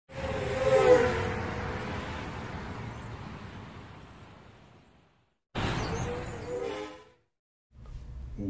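Intro sound effect behind an animated title card: a rushing whoosh with wavering tones that dip in pitch. It peaks about a second in and fades out over the next few seconds. A second, shorter burst of the same effect comes about half a second later and cuts off suddenly.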